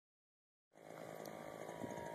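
Faint outdoor background hiss that starts under a second in after dead silence, with a thin faint whine toward the end.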